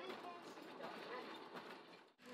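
Faint background ambience with distant, indistinct voices.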